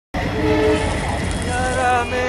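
Train rumble at a railway station, with a short horn of two steady notes about half a second in. Music with a sung melody comes in near the end.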